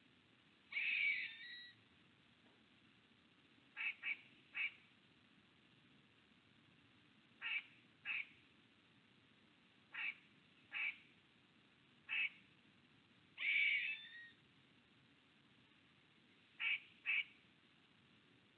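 A wild bird calling repeatedly. Short, sharp notes come singly or in quick pairs every few seconds, and two longer, harsher calls come about a second in and again past the middle.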